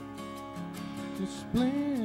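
Worship song on strummed acoustic guitar, with a singing voice coming in loud about one and a half seconds in.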